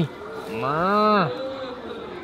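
A cow mooing once: a single call of under a second, starting about half a second in, that rises and then falls in pitch.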